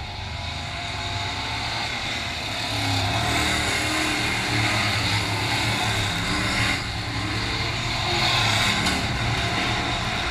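Dirt-track late model race cars' V8 engines at speed as the cars run through a turn, the sound growing louder about three seconds in, dipping briefly near seven seconds and peaking again just after.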